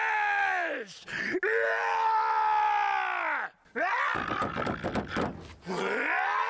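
A man's long, drawn-out Hulk-style groaning yells, two of them, each rising and then falling in pitch. Then about a second and a half of rattling knocks, and another yell begins near the end.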